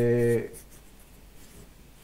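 A man's drawn-out hesitation sound "ehh", held on one pitch and ending about half a second in, followed by quiet room tone.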